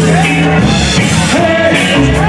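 A live band playing loud amplified music: drum kit, bass, electric guitars and a hand drum, with a melody line gliding up and down above the band.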